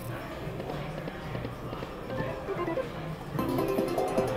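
Lock It Link 'Cats, Hats & More Bats' video slot machine playing its reel-spin music and effects, then a louder chiming jingle about three and a half seconds in as the reels stop on a small win.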